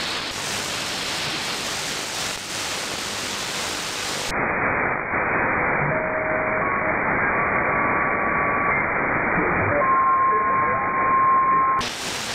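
Shortwave static from an RTL2832 software-defined radio with an upconverter, tuned across the 11.6 MHz (25 m) band. About four seconds in, the receiver switches from AM to lower sideband with a narrow filter: the hiss turns duller, and short steady whistles of carriers sound at a few different pitches as the tuning moves. Near the end it goes back to the brighter AM hiss.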